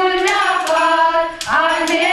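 A group of female voices singing together in unison, holding long notes and gliding between them, with a few sharp taps mixed in.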